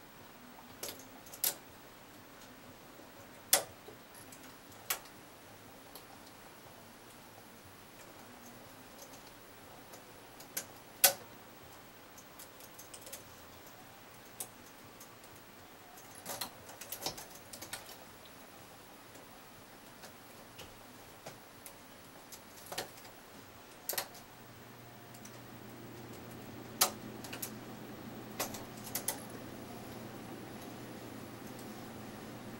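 Irregular sharp metallic clicks and taps of a metal transfer tool against the latch needles of a double-bed knitting machine as stitches are moved by hand for cables. A faint low hum comes in near the end.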